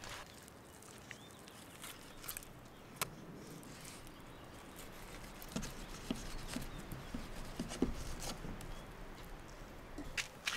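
Faint scattered taps, clicks and scrapes of crappie being filleted with a knife on a wooden board. There is a sharper knock about three seconds in and a closer run of small ticks in the second half.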